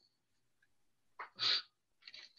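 A person makes one short, sharp burst of breath noise about a second and a half in.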